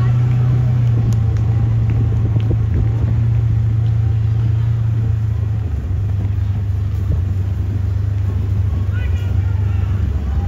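A steady, loud low rumble runs under faint voices of spectators along a cross-country course, with a voice calling out near the end.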